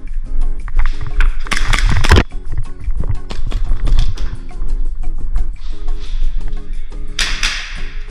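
Background music with a steady beat. A loud burst of noise cuts across it about one and a half seconds in, and another comes near the end.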